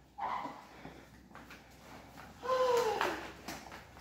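A house door being unlocked and opened: a few short latch and lock clicks, then a single creak that falls in pitch as the door swings open.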